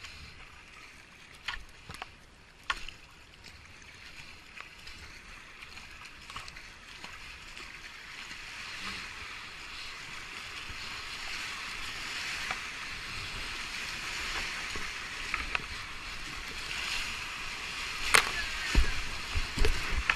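Kayak running into a river rapid: rushing whitewater builds steadily louder, with a few sharp paddle knocks early on and heavy splashes as the boat drops through the waves near the end.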